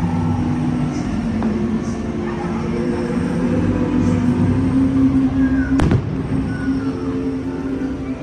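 Fireworks display: one sharp firework bang about six seconds in. Underneath are steady held notes from the show's music and a murmur of crowd voices.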